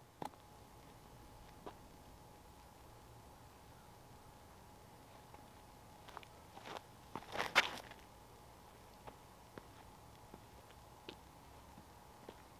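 A few footsteps and a short scuffing burst from a person stepping into a backhand disc golf throw on a paved driveway, the loudest moment about seven and a half seconds in. Otherwise a quiet background with a faint steady tone and a few isolated clicks.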